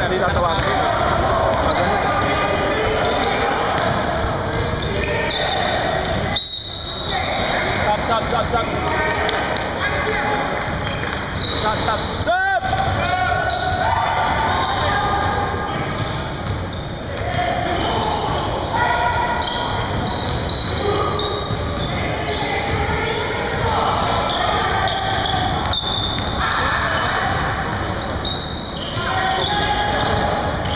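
Indoor basketball game on a hardwood gym floor: a ball dribbling and players talking and calling out, echoing in the large hall. There is a short gliding squeak about twelve seconds in.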